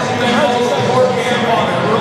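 A man's voice over a public-address system, talking steadily without a break.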